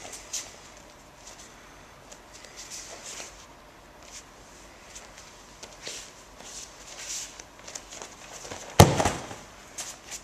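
Soft rustling of cotton practice uniforms and bare feet shuffling on a training mat, then one loud thump of a body landing on the mat in a breakfall near the end.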